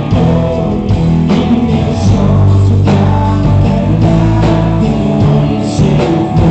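Live Celtic rock band playing loudly, with electric guitar, drum kit and singing.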